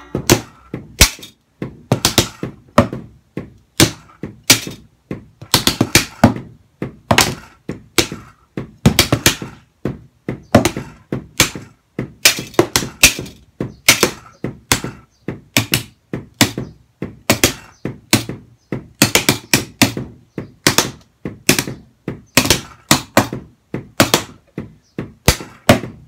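Wooden drumsticks playing a shuffle groove on a muffled practice kit of plastic-wrapped boxes and pads: a continuous, uneven run of dull thunks.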